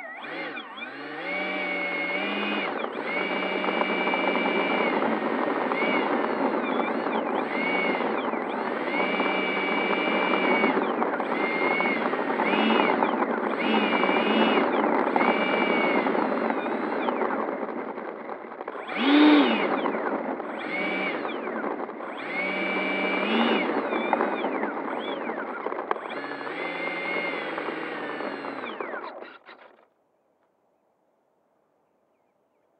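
The 90mm electric ducted fan of a Freewing F-18 model jet running on the ground, a high whine whose pitch rises and falls again and again with the throttle. It surges loudest for a moment about two-thirds of the way through and cuts off just before the end.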